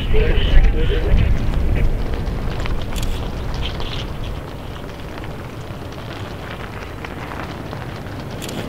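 Wind buffeting the microphone as a low, uneven rumble, strongest in the first two seconds and easing after about four, with faint distant voices.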